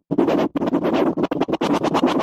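DJ scratching in a music track. The music drops out abruptly, then returns chopped into short, stuttering fragments, several a second.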